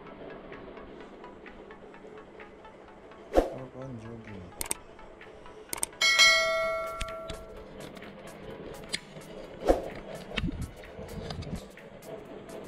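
Edited video sound effects: a falling swoop about a third of the way in and several sharp clicks, then, about halfway through, the loudest sound, a bright bell-like ding that rings for over a second, the notification chime of a subscribe-button animation.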